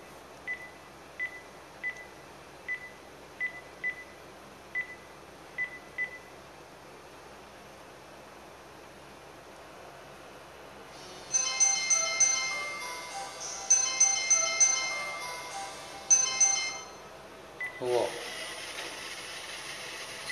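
Cordless phone handset keypad beeping as a number is dialled: about nine short high beeps, roughly one every 0.7 s. After a few seconds' pause, a mobile phone rings with a melody ringtone for about six seconds as the call comes through.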